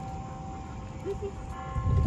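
Outdoor street background: a steady low rumble with a constant electrical-sounding hum of a few steady tones running through it.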